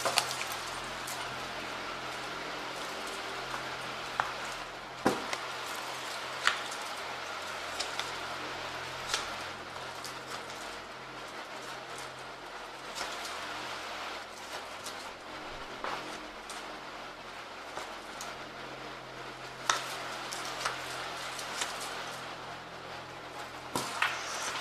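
A tarot deck being handled and shuffled: a few scattered soft clicks and taps of cards over a steady background hiss.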